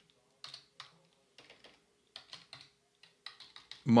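Computer keyboard typing: scattered keystrokes in small clusters of two to four clicks, with short pauses between them.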